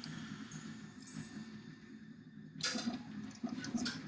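Flush cutters snipping a component lead off a circuit board once, a sharp snip about two and a half seconds in, against a faint background hiss.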